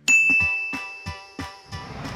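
A bright bell-like ding sound effect hits at the start and rings away over about a second, over background music with a steady beat.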